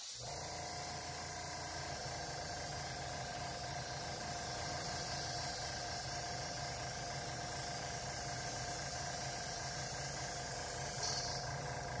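A Master G22 airbrush spraying paint, a steady hiss of air, over the steady hum of a small airbrush compressor. Both start at the outset and hold level throughout.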